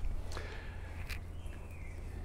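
A few soft footsteps on a paved garden path against faint outdoor background noise.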